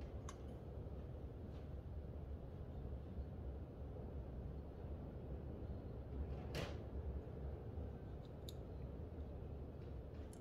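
Scattered light clicks of small steel parts of a door regulator mechanism being handled and fitted together by hand, the sharpest about two-thirds of the way through, over a steady low hum.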